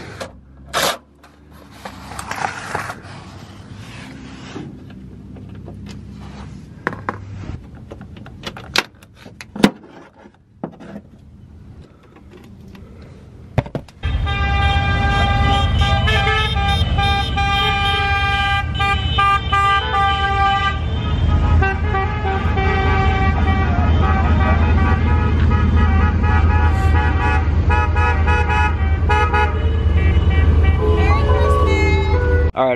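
Scattered clicks and knocks of wrench work on transmission bolts, then about halfway through a sudden switch to vehicles driving past with a steady low engine rumble and horns tooting in long held notes.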